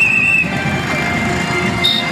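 Street noise of a motorcycle procession: many motorcycle engines running in a dense, steady rumble, with music underneath. A short warbling high tone sounds at the start.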